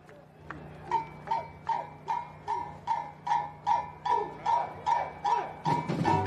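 Samba school drum section starting up: a sharp, high-pitched percussion stroke repeated evenly about two and a half times a second and growing louder. Near the end the full bateria with its deep drums comes in.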